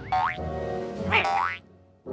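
Cartoon soundtrack music with comic sliding sound effects: a quick pitch swoop right at the start and a second rising glide about a second in. The sound then cuts off to near silence for the last half second.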